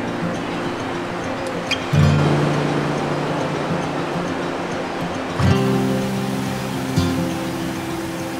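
Background music of acoustic guitar chords, each chord held and a new one struck about two seconds in and again about five and a half seconds in, over a steady wash of surf.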